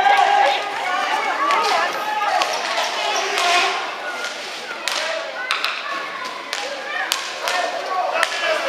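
Rink hockey play: sharp clacks of sticks striking the ball and knocking on the floor, repeated irregularly, with players' voices calling out over them.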